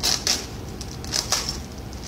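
Clear plastic bag crinkling as it is handled and opened, in two short bursts about a second apart.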